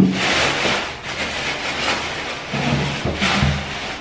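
Plastic shopping bag rustling and crinkling as a glass vase is pulled out of it, after a sharp thump at the very start.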